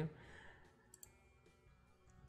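Faint computer mouse clicks: one sharp click about halfway through and a few softer ticks, over low room hiss.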